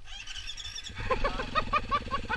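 Enduro motorcycle engine being cranked over: a steady hum with a rhythmic chugging about seven times a second, starting about a second in.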